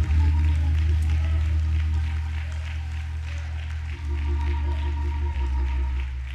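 Church music of sustained keyboard chords over deep held bass notes, the bass changing pitch about four seconds in and again near the end.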